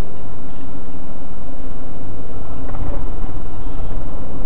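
Car driving, with a steady low engine and road hum picked up by a dashcam microphone inside the car. Two short high beeps sound, about half a second in and near the end.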